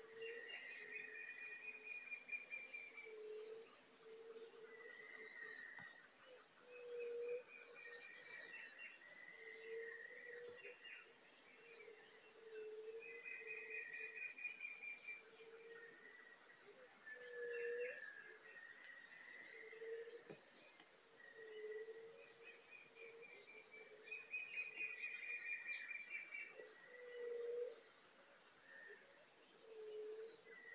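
Forest ambience: a steady high-pitched insect drone runs throughout. Over it, birds call over and over, low notes paired with higher trilled phrases, repeating every couple of seconds.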